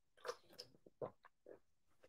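A man gulping water from a bottle: a few short, quiet swallows about half a second apart.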